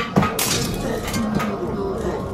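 Film soundtrack with music and voice-like pitched sounds, and a sharp crack about half a second in.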